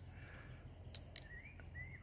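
Faint outdoor ambience with two short rising bird chirps, one just past a second in and one near the end, over a thin steady high-pitched tone.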